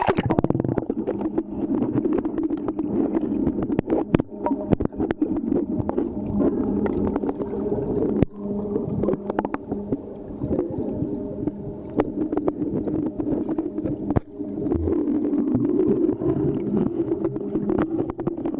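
Water heard through a submerged camera: a muffled, steady low churning as a dog swims close by, with many scattered sharp clicks and knocks.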